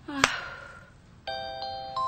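A sharp click with a short breathy voice sound near the start. A little past one second in, a chime-like melody of sustained electronic notes begins, stepping to new notes every few tenths of a second.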